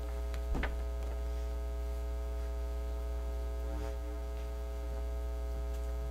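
Steady electrical mains hum on the meeting room's microphone and broadcast feed, with one brief sound about half a second in.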